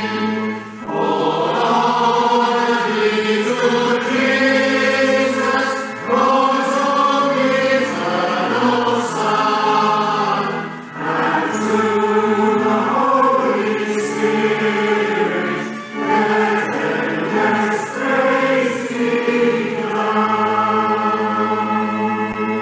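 Choir singing a hymn in sustained lines, with short breaks between phrases every few seconds.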